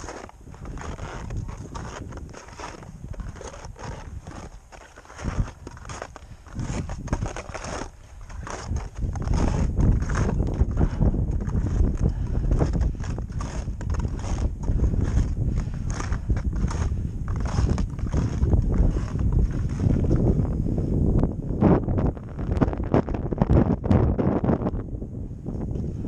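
Footsteps on packed snow in a steady walking rhythm, with wind buffeting the microphone. The wind gets much heavier about nine seconds in.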